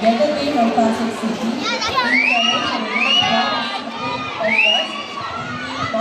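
Spectators cheering and shouting for swimmers in a race. From about two seconds in, a run of loud, high-pitched shouts rises and falls in pitch over a constant crowd noise.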